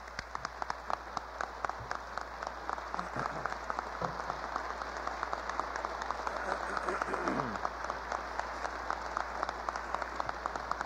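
Audience applauding: dense clapping that starts suddenly and keeps a steady level.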